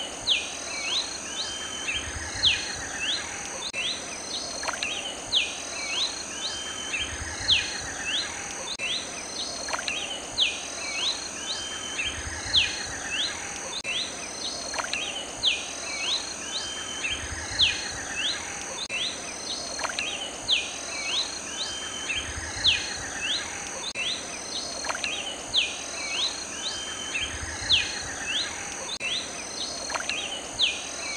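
Red-capped cardinal (Bolivian subspecies, Paroaria gularis cervicalis) singing: a short phrase of quick, sharply falling whistled notes, repeated about every five seconds. A steady high hiss runs underneath.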